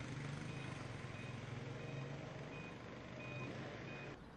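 Street ambience: a steady low engine hum with a short, high beep repeating about every two-thirds of a second, a vehicle's reversing alarm.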